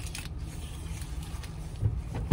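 Steady low rumble of a vehicle heard inside the car cabin, with a few light clicks at the start and a brief low thump near the end.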